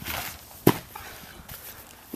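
A single thud about two-thirds of a second in: feet landing hard on a grass lawn at the end of a standing flip. Light scuffing of feet on grass around it.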